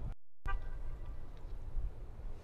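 Low, steady outdoor background rumble from the broadcast microphone. The sound drops out completely for a moment near the start and returns with a short tonal blip.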